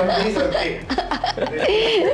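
People talking and laughing, with chuckles mixed into the speech.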